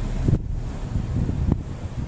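Wind buffeting the microphone from a slowly moving car, over the car's low rumble, with two short low thumps about a second apart.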